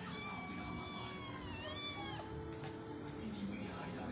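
Persian kitten meowing: one long, high-pitched call of about two seconds, its pitch dipping and rising again near the end before it stops.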